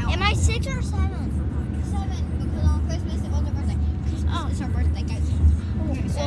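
Steady low rumble of a car cabin on the move, with girls' high-pitched voices in short snatches over it, mostly near the start and again about four seconds in.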